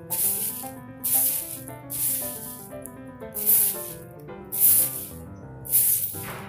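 Swishing strokes of a stick broom sweeping, about one stroke a second, over background music with a tune.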